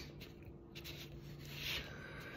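Faint scratching of a pen on paper, briefly louder near the end, over a faint low hum.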